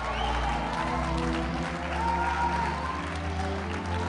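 Held musical chords with a deep bass note, changing about halfway through, under congregation applause and cheering.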